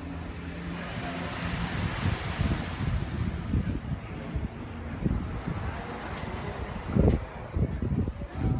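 Wind gusting on the microphone, rumbling in irregular low buffets, the strongest about seven seconds in.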